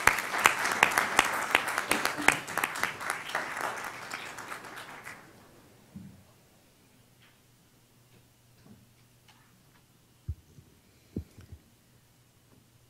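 Audience applauding: dense clapping that dies away after about five seconds, followed by quiet with a few low thumps near the end.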